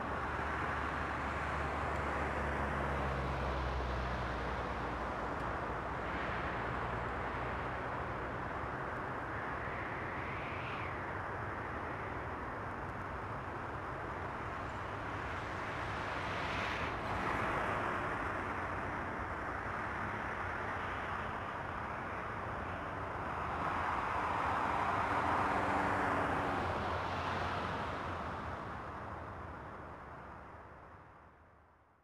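Road traffic ambience: a steady rumble and hiss with vehicles swelling past every few seconds. The loudest pass comes about five seconds before the end, and the sound then fades out.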